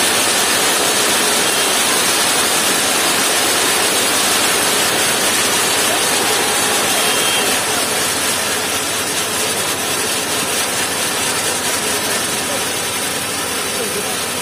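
A kambam, a temple fireworks tower packed with fountain fireworks, burning with a dense, continuous hissing rush of sparks. It is loud and steady, easing a little in the second half.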